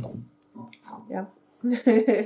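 A woman's voice: a short spoken 'ja', then the start of a laugh, over a faint steady hum. A soft low thump right at the start.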